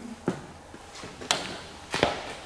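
Three short, sharp knocks, the loudest a little past halfway, with low room noise between them.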